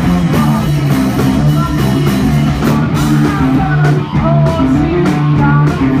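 Live rock band playing loud: electric guitar and bass over a drum kit. The drum and cymbal hits come through more sharply from about two and a half seconds in.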